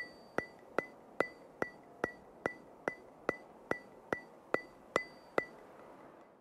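A steady rhythm of sharp percussive ticks, about two and a half a second (fourteen in all), each with a brief high ping, as an outro sound effect.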